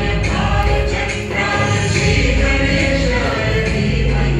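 Loud music with singing voices over steady bass notes.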